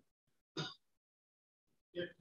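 Near silence between sentences of speech, broken once, a little over half a second in, by a short faint voice sound such as a single syllable.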